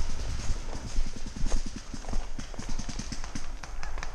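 Footsteps of a paintball player moving quickly through dry leaf litter: a rapid, irregular run of low thuds and crunches, fastest in the second half.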